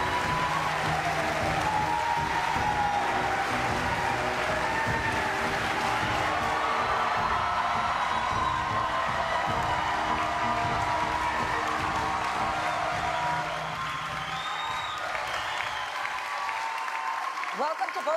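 Audience applauding over loud theme music. About thirteen and a half seconds in the music's bass drops away and the applause carries on more quietly.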